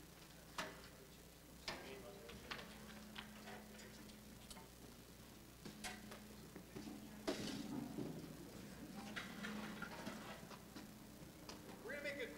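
Scattered clicks and knocks of instruments and stage equipment being handled as musicians move about during a stage changeover, over a faint steady low hum.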